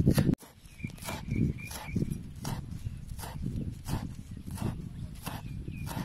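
Large kitchen knife chopping spring onions on a wooden chopping board: a steady run of sharp knocks, about two to three a second. It opens with a brief loud noise that cuts off abruptly.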